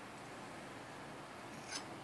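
Quiet steady background hiss with a faint, brief handling sound near the end; no tool strike.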